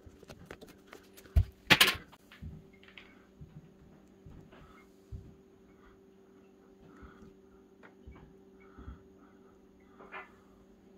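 A few knocks and a brief scraping rustle from hands handling things on a wooden desk near the start. Then a faint, steady low hum with the odd small tick.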